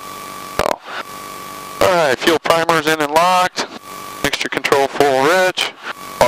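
Men's voices over the aircraft's headset intercom. In the pauses there is a steady hiss with a thin, high, steady whine.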